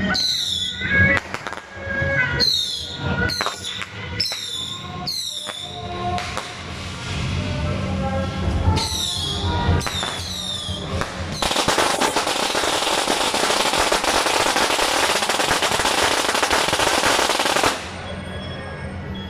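Firecrackers going off: a few sharp bangs with falling whistles, then a long string of firecrackers crackling continuously for about six seconds and stopping suddenly near the end.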